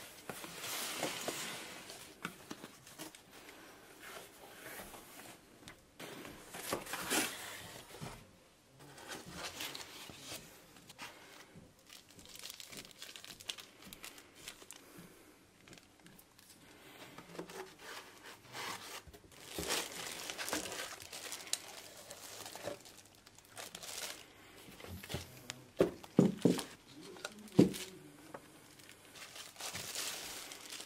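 Cardboard box flaps being opened and a plastic bag crinkling and rustling as a packed item is handled and lifted out of foam packing. The rustling comes in irregular bursts, with a few sharp knocks near the end.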